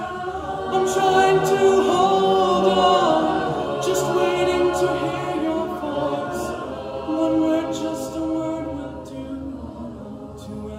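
A cappella choir singing a Disney song medley, a male soloist over sustained harmonies from the mixed group, with no instruments. The sound swells about a second in and eases off toward the end.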